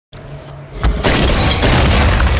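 Cinematic sound effect: a heavy boom about a second in, followed by a loud sustained rumble.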